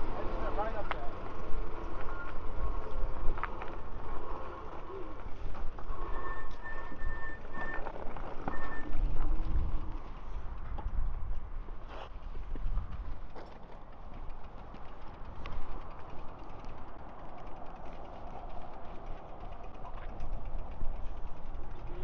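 Wind buffeting the microphone and tyre noise while riding e-bikes along a paved path, as an uneven low rumble that rises and falls.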